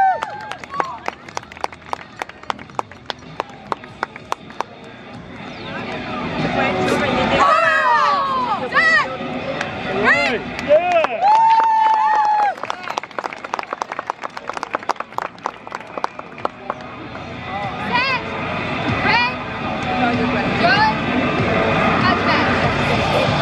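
Martial arts students shouting kiai, short sharp cries through the middle with one long held shout, during a form performed over background music with a steady beat.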